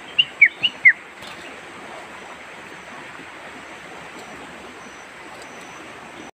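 Four short, loud chirps from bulbuls (merbah) in a wire cage trap, each a quick falling note, all within the first second. A steady outdoor hiss continues beneath them.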